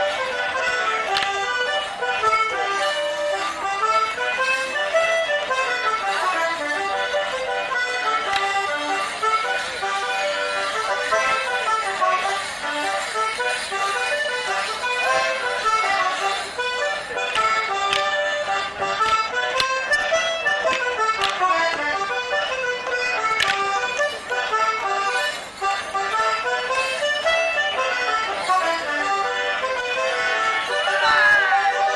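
An accordion playing a lively traditional Morris dance tune in quick runs of notes, with a few sharp wooden clacks from the dancers' sticks striking together.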